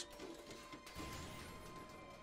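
Quiet cartoon soundtrack: faint background music with a soft hit about a second in.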